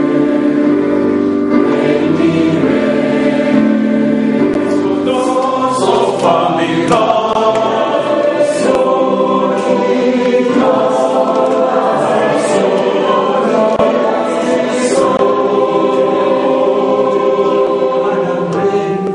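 A choir singing slow, sustained chords that shift every second or two, without a break.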